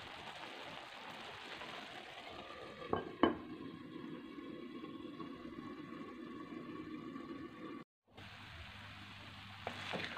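Faint, steady sizzling of rice pilaf with carrots and peas steaming in a pan on low heat, with two short knocks about three seconds in. The sound drops out for a moment near the eighth second.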